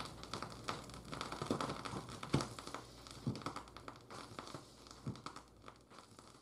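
Faint vinyl record surface noise from a Shure cartridge's stylus tracking a silent groove on a turntable: scattered irregular crackles and pops over a low hum.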